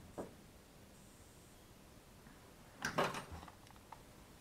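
Faint tool-handling sounds at a workbench: a light tap near the start, then a brief clatter about three seconds in as a hot glue gun is picked up, followed by a couple of small ticks.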